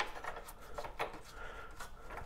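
A few soft clicks and rubbing from the Evolution S355MCS chop saw's ratcheting front sliding clamp as it is pushed up against a steel square tube.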